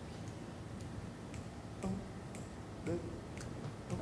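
Acoustic double bass played very softly pizzicato: a few sparse plucked notes, some gliding in pitch, with light clicks of fingers on the strings.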